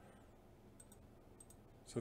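Near-quiet room tone with two faint computer mouse clicks, about a second and a second and a half in.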